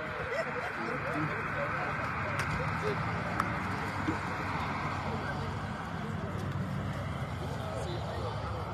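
Indistinct chatter of a small group of people talking at once, with no single voice standing out.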